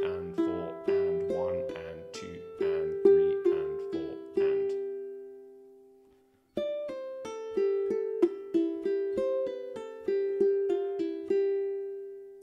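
Ukulele (Flight Fireball) played fingerstyle: a slow run of single plucked notes with pull-offs down to the open strings, broken by plucks of the open fourth (G) string. About halfway through the notes die away to a short silence, then the playing starts again.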